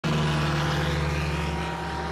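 A steady low-pitched droning hum with a hiss over it, easing off slightly near the end.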